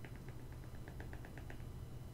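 Faint, quick clicks of a stylus tapping on a tablet screen, several a second, as a dashed curve is drawn stroke by stroke.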